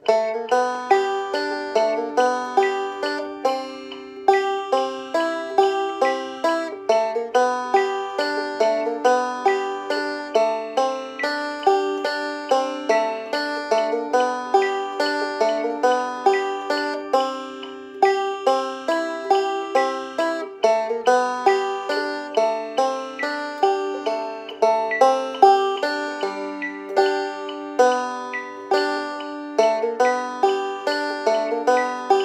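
Open-back banjo fingerpicked in fast, continuous rolls, a steady stream of bright plucked notes several to the second.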